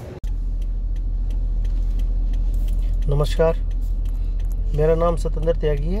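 Steady low rumble inside a car cabin, beginning abruptly just after the start, with a man's voice starting about three seconds in.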